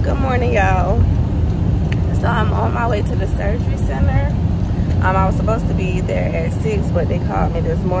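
Steady low rumble of a car's cabin and road noise while the car is driving, under a woman talking in bursts.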